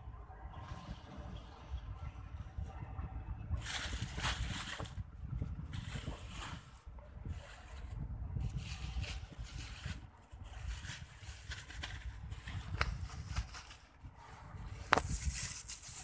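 A plastic bag rustling and crinkling in irregular stretches as groundbait is handled, over a low steady rumble, with one sharp click near the end.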